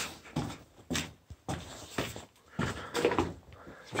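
Footsteps going down concrete stairs and onto a gritty, rubble-strewn concrete floor, about two steps a second.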